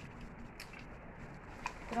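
Faint stirring of a pot of fusilli pasta in water and sauce with a wooden spoon, with a couple of soft clicks, about half a second in and near the end.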